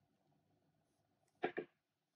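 Small plastic paint pot set down on a table: two quick knocks about one and a half seconds in.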